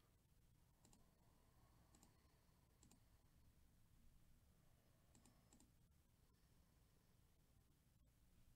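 Near silence with a few faint computer mouse clicks, some single and some double, about one, two and three seconds in and again around five seconds.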